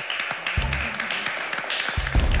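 A small group of girls clapping excitedly, a quick, uneven patter of hand claps, over background music with a low bass line.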